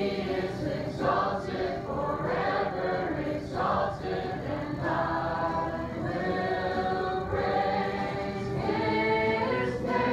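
A congregation singing a slow worship chorus together, led by a woman's voice at the microphone, with acoustic guitar accompaniment.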